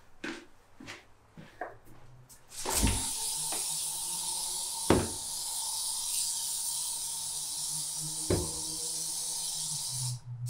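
Aerosol can of ant spray held down in one long, steady hiss that starts about three seconds in and runs on, with three sharp knocks during it, the loudest about five seconds in. A few light taps come before the spraying starts.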